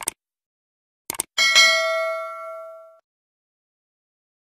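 Clicks of a subscribe-button animation: a quick double click, then another about a second in. They are followed by a bright notification-bell ding that rings and fades over about a second and a half.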